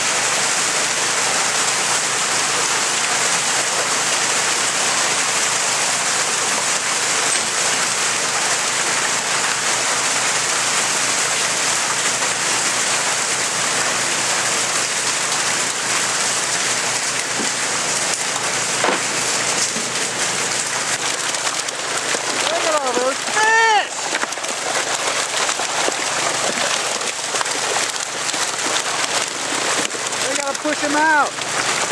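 Water from a fish-stocking truck's tank rushing down a chute into a lake, carrying a load of rainbow trout: a steady, loud splashing hiss.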